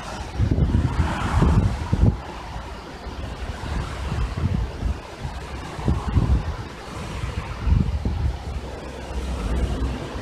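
Gusty wind buffeting the microphone in uneven low rumbles, strongest about a second in and again near the six- and eight-second marks, over a steady rush of wind through tall grass and trees.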